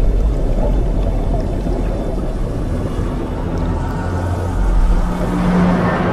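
Muffled underwater rumble of churning water and bubbles, heavy in the low end. A low steady drone comes in about five seconds in.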